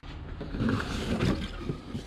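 Cardboard box of connecting rods being opened: the lid comes off and a hand rummages inside, making irregular rustling and scraping.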